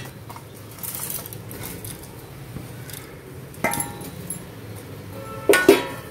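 Metal ladle stirring red poha through simmering jaggery syrup in a kadai, with sharp clinks of the ladle against the pan about halfway through and twice more near the end, each ringing briefly.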